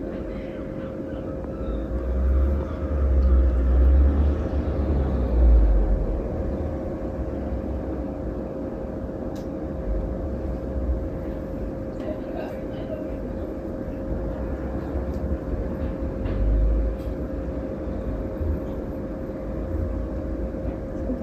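Steady room hum carrying a constant mid-pitched tone, with a low rumble swelling between about two and six seconds in and again briefly near the end.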